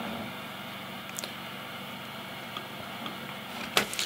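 Steady background hiss with a faint hum, room tone from the microphone, broken by one faint click about a second in.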